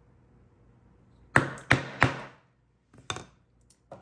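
Mallet striking a leathercraft corner punch to cut rounded corners in a paper pattern: three sharp strikes about a third of a second apart, then a few lighter knocks near the end.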